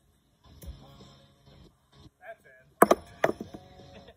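Metal washers landing on a carpet-covered washer-toss board with a wooden frame: two sharp clacks about half a second apart near the end.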